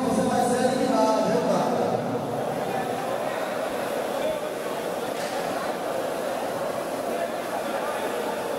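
Spectators chattering in a large, busy hall: a man's voice stands out in the first two seconds, then a steady murmur of many voices.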